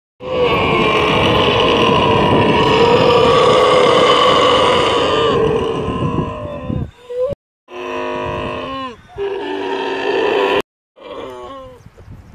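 Young camels groaning: one long, loud bellowing call of several seconds, followed after sudden breaks by shorter calls.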